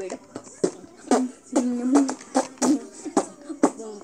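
A child beatboxing: sharp mouth-made percussion beats, about two a second, with short hummed notes in between.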